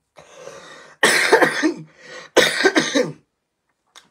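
A man coughs twice into his fist, each cough lasting about a second, after a quieter breathy sound at the start.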